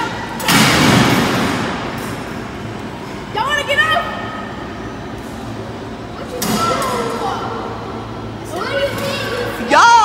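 Disk'O amusement ride running, with a steady low hum. A rush of noise with a low rumble comes about half a second in and again around six and a half seconds as the car sweeps along its track. Children's high voices call out in between.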